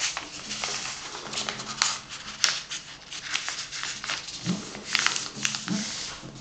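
A sheet of printer paper being folded and creased by hand: rustling and crinkling with many short scraping strokes as fingers press and run along the fold.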